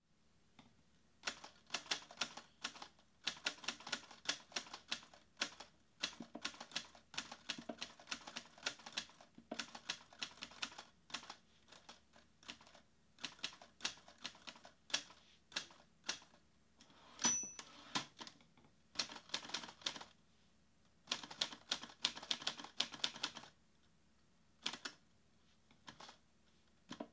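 Manual typewriter typing in bursts of quick keystrokes with short pauses between them. About seventeen seconds in there is a single ringing ding, the typewriter's end-of-line bell.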